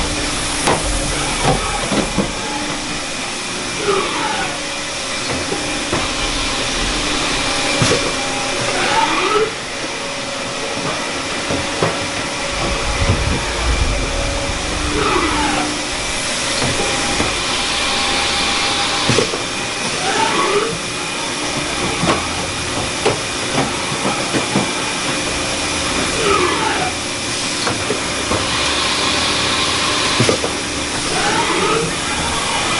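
Machine-shop background noise: a steady hiss with faint hum tones, a whine that glides up and down about every five or six seconds, and scattered light clicks.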